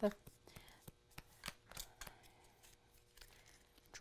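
Faint, scattered rustles and small clicks of paper squares being accordion-folded and creased by hand on a craft table.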